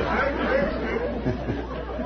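Studio audience laughing at a joke, the laughter gradually thinning out.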